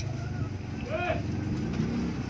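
Steady low drone of a running engine, with one short call that rises and falls in pitch about a second in.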